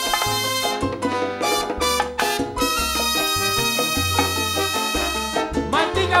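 Live salsa band playing an instrumental passage between sung verses: horns over bass and Latin percussion, with a long held chord in the middle.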